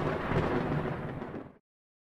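TV network logo ident's sound effect: a thunder-like rumble that fades and stops dead about one and a half seconds in, followed by silence.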